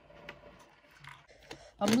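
Faint light clicks and taps of small plastic toys being handled and moved on a tabletop, a few scattered ticks. A voice starts speaking near the end and is the loudest sound.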